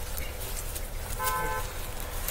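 A short, steady horn-like toot, held for about half a second a little past a second in, over a low steady rumble.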